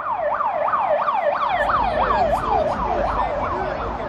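Emergency vehicle siren in a fast repeating cycle, its pitch dropping quickly and jumping back up about three times a second, over a low traffic rumble.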